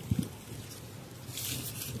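Lemon tree leaves and twigs rustling as they are handled for pruning, with a brief crisp rustle about one and a half seconds in.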